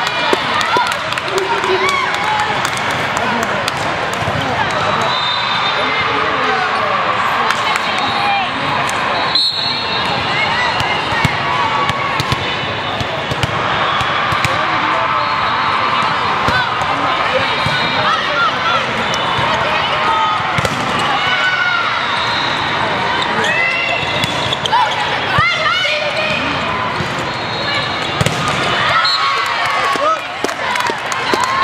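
Indoor volleyball match: a volleyball being hit and bouncing on the court at irregular moments, over a continuous mix of players' and spectators' voices, shouts and calls.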